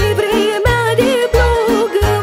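A girl singing a Romanian folk song in an ornamented, wavering melody over a backing track, with a low bass beat pulsing about every two-thirds of a second.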